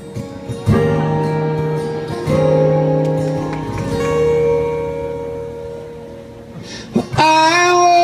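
Acoustic guitar chords played live, struck a few times about a second and a half apart and left to ring out and fade. Singing comes back in about seven seconds in.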